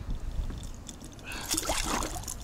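Water splashing as a pike is pulled out beside an inflatable boat by hand. The splash starts about one and a half seconds in, over a low steady rumble.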